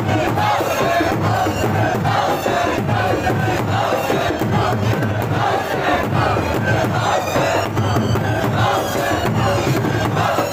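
A crowd of Shia mourners chanting together while beating their chests with their hands in matam, the strikes landing in a steady beat.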